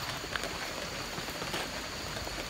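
Steady, faint wash of rain-swollen runoff water running through the undergrowth, with a few faint ticks.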